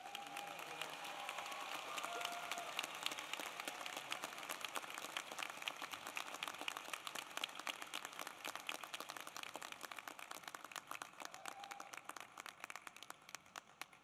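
Audience applauding: dense, steady clapping from a large crowd that thins out and fades near the end.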